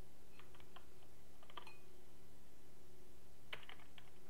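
A few scattered keystrokes on a computer keyboard, over a steady low hum.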